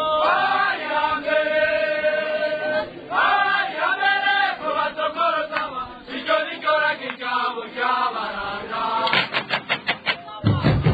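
Chanted singing: long held sung notes, then shorter sung phrases, with a quick busy passage near the end.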